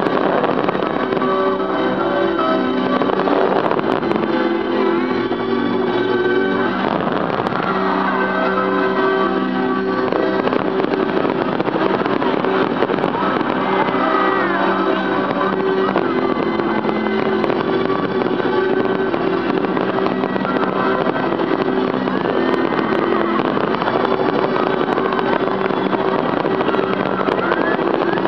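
Music with long held notes over the dense, continuous crackle of a fireworks display.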